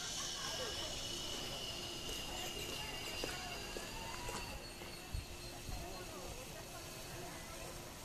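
Faint voices talking in the background, over a steady high-pitched whine that drifts slowly lower in pitch and a low rumble.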